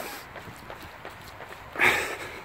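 A runner breathing hard while jogging, with faint footfalls, and one loud breathy exhale close to the microphone near the end.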